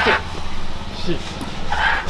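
A dog barking, with short sharp barks at the start and again near the end.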